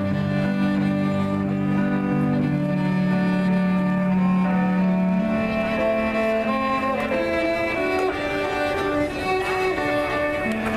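A cello played with a bow: long held low notes for about the first five seconds, then a run of shorter, higher notes.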